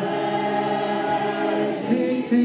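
Group of voices singing a worship song together, holding long sustained notes.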